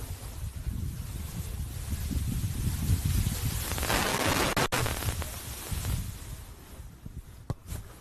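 Wind buffeting the camera microphone: an uneven low rumble, with a stronger gust and hiss about four to five seconds in.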